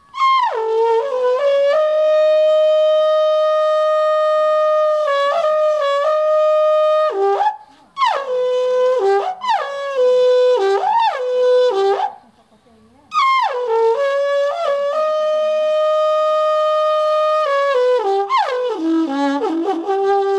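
Trâmbița, a long Carpathian alphorn-type horn, here made of sheet metal, playing the pastoral signal for gathering the sheep for milking. Three phrases, each falling from high notes onto a long held note, with short breaths between them about 7.5 and 12 seconds in, and a falling run near the end.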